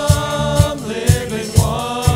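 Live worship band playing and singing: several voices sing together over guitars, bass and keyboard, with drum hits on a steady beat of about two a second.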